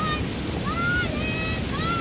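Wind rumbling on the microphone, with a few short high-pitched tones sliding up and down over it, the last one held near the end.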